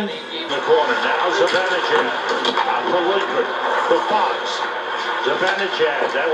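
Hockey game broadcast playing from a television: a steady wash of arena crowd voices with broadcast talk underneath, heard through the TV speaker.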